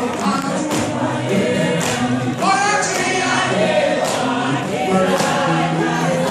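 Group of voices singing a gospel song, with a steady percussive beat.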